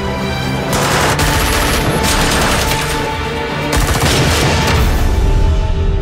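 Dramatic orchestral trailer music with three loud bursts of rapid gunfire sound effects laid over it, each lasting about a second.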